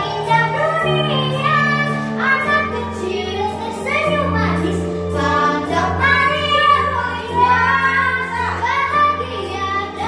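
A young girl singing an Indonesian pop ballad into a microphone over a musical accompaniment of held low notes that change every couple of seconds.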